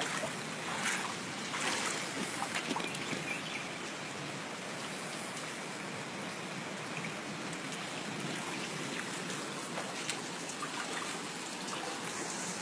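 Steady hiss of heavy rain and running floodwater, with a few small louder ticks in the first three seconds.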